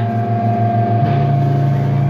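Heavy rock band's electric guitars and bass holding a droning chord with one steady high note sustained over it, the drums silent; the low note shifts about halfway through.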